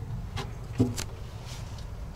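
Low steady background rumble with a few short, soft clicks, and a brief low vocal sound a little under a second in.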